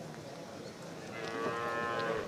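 A cow mooing once: a single drawn-out, fairly faint call of about a second, starting about halfway through.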